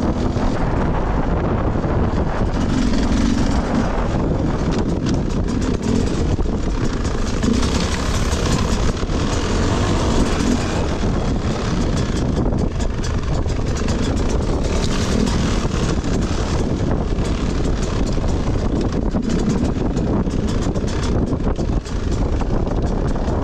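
Enduro dirt bike engine running at low revs over rough ground, its note swelling briefly every few seconds as the throttle is opened and closed.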